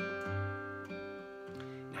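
Taylor acoustic guitar strummed, a few chords left ringing.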